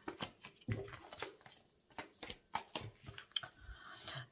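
Oracle cards being handled on a table: light, irregular clicks and taps of cards and fingers.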